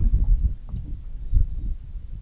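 Wind buffeting the microphone: an uneven low rumble that comes in gusts, strongest about one and a half seconds in, with a faint click a little before a second in.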